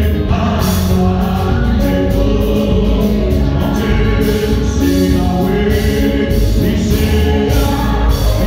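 Gospel worship song: voices singing over amplified band accompaniment with a strong bass and a steady beat, loud and continuous.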